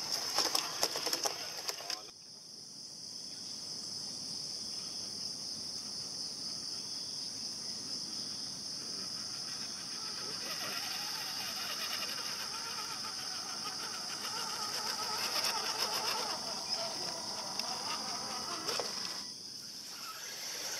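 Steady high-pitched chorus of insects from the surrounding forest, with a run of clicks and scrapes in the first two seconds.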